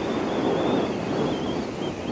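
Wind rushing over the microphone of a Royal Alloy GP 300 S scooter riding at road speed, with the scooter's running noise beneath and a faint steady high whine.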